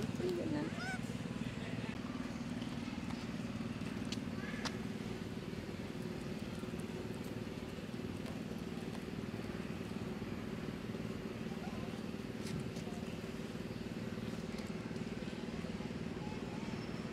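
A steady low drone of a running motor, with a few faint clicks.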